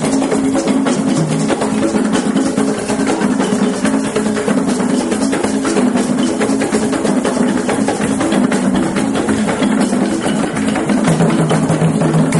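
Ensemble of tall carved wooden hand drums played with bare hands in a fast, dense, unbroken rhythm.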